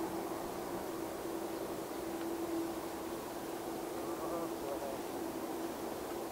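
Boeing 787-8's jet engines idling as the airliner taxis onto the runway: a steady, even whine over a low rush of noise.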